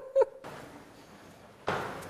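A woman's voice ends on a last word, then faint room hiss follows a cut. Near the end a sudden burst of echoing noise starts in a large hard-walled room.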